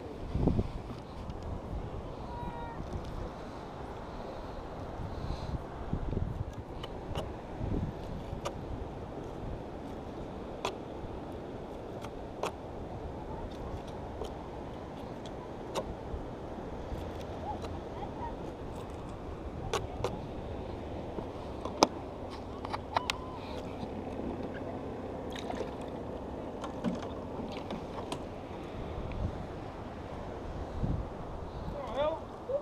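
Steady rush of wind and sea, with low gusts on the microphone and scattered sharp clicks and taps as bait fish are cut with a serrated knife on a wooden pier railing.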